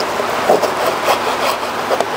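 Kitchen knife sawing through a lemon on a wooden cutting board, a few short cutting strokes and light taps of the blade on the board, over a steady hiss of background noise.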